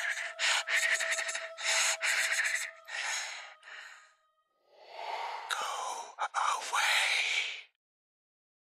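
A woman gasping for breath in a series of short, hard heaves, then a longer, strained gasp that breaks off suddenly near the end. A faint steady tone fades out under the first few breaths.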